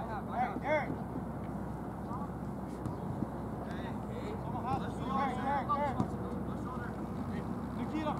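Soccer players calling out in short shouts, at the start and again around five to six seconds in, over a steady outdoor background hum.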